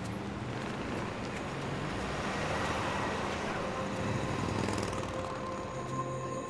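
City street traffic: a steady wash of passing cars with low engine hum, swelling a little in the middle as vehicles go by.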